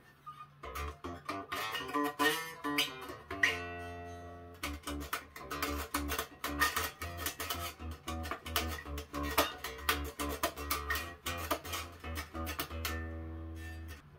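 Unplugged G&L Tribute SB-2 electric bass played with the fingers, heard without an amp: a run of quick plucked notes with one note left ringing for about a second near the four-second mark, and a few notes ringing out near the end.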